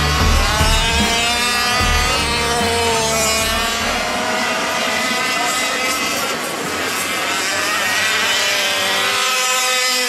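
Several 1/5-scale RC race cars' small two-stroke gas engines revving up and down together as the cars race around the track. Background music with a steady bass line fades out in the first few seconds.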